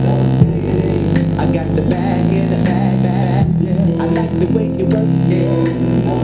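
A beat played live on a Roland SP-404SX sampler: sustained low bass notes that change about every second and a half, a melody line above them, and steady drum hits.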